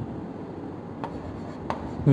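Pen writing on an interactive display screen: a faint scratchy sliding with two light taps of the tip, one about a second in and one near the end.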